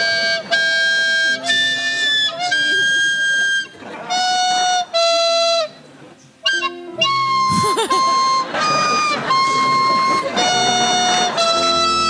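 Plastic soprano recorder playing a simple tune, one held note at a time with short gaps between, the notes jumping between lower and high pitches.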